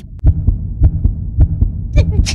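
Cartoon sound effect of a fast heartbeat: paired low thumps, lub-dub, repeating a little under twice a second.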